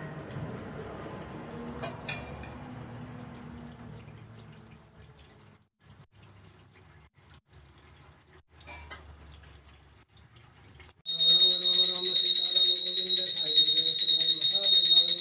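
Water poured over a marble idol during an abhishekam, a faint trickle and splash with a few small knocks of a steel vessel, fading off. About eleven seconds in, a loud, fast-ringing bell starts suddenly together with devotional music.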